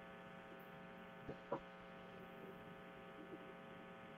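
Faint, steady electrical mains hum with a stack of even overtones, carried on an open microphone in an online call. Two faint clicks come about a second and a half in.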